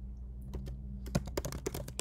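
Typing on a computer keyboard: a couple of keystrokes about half a second in, then a quick run of key clicks in the second half as a short word is typed.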